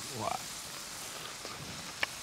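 A short pause between speech: a brief faint murmur of a voice just after the start, then only a steady, faint outdoor background hiss.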